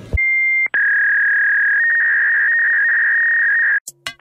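Loud electronic beep tone: a short higher beep, then a long steady lower tone of about three seconds that cuts off suddenly.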